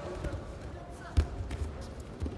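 One heavy thud, about a second in, as a judoka's body hits the tatami mat in a throw attempt, among softer thumps of feet and bodies on the mat.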